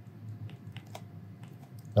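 Faint, irregular clicks and taps of a stylus writing on a tablet screen, over a low steady hum.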